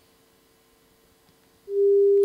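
After near silence, a plain steady sine test tone starts suddenly near the end and holds at one pitch. It is the first of two closely spaced tones in a demonstration of beats.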